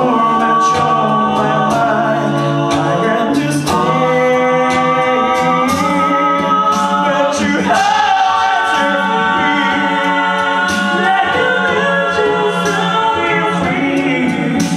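Male a cappella group of six singing a song live through microphones in sustained chordal harmony, the chords shifting every few seconds. Vocal-percussion hits click in over the chords throughout.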